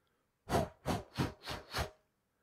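Five quick rasping whooshes in a steady rhythm, about three a second, made while miming a bird flapping its wings.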